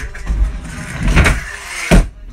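Stunt scooter wheels rolling on a plywood mini ramp, a steady low rumble that swells about a second in. Just before the end comes one loud, sharp smack as the scooter comes down on the ramp.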